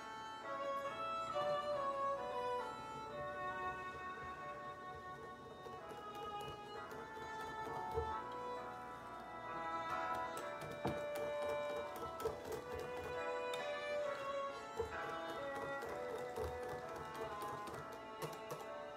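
A fiddle tune playing as background music, with faint clicks of a wire whisk stirring liquid in a glass bowl.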